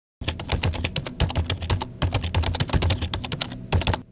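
Rapid typing on a keyboard, about ten keystrokes a second with short breaks near the middle and near the end, over a low hum.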